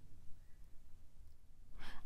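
A pause in speech with faint low room hum, ending in a short intake of breath near the end as the speaker gets ready to talk again.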